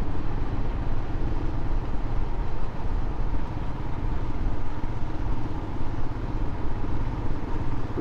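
Motorcycle being ridden at a steady speed: the engine runs evenly under a steady rush of wind and road noise.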